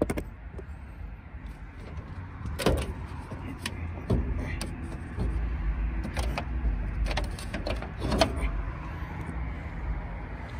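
Jeep Wrangler TJ hood being unlatched and lifted: a handful of separate clicks and knocks from the hood catches and the hood panel over a low, steady rumble.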